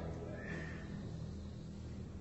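A pause in an opera performance: the tail of a loud orchestral chord dies away, leaving low hum and hiss from the old reel-to-reel tape.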